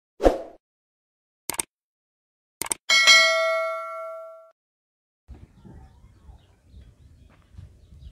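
Subscribe-button animation sound effects: a short thump, two sharp clicks, then a bright bell ding that rings out for about a second and a half. Faint outdoor background noise comes in after about five seconds.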